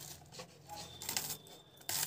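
A knife cutting and scraping an onion in a few short, sharp strokes.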